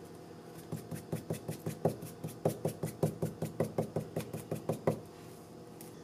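Fabric marker tip tapped rapidly against a fabric flower on a plastic-wrapped countertop while stippling on dye, about six light taps a second for around four seconds, starting about a second in.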